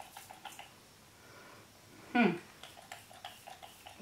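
Quiet room with a few faint handling clicks, then a woman's short closed-mouth 'hmm' about two seconds in, her reaction to the scent of a setting spray.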